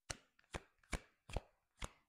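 A tarot deck being overhand-shuffled: five sharp slaps of small packets of cards dropping onto the deck, about two and a half a second.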